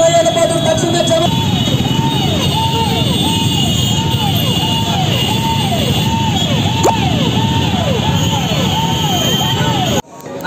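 Siren sounding over the noise of a motorcycle rally crowd: a steady tone switches, just over a second in, to a repeated rising-and-falling whoop, about two a second.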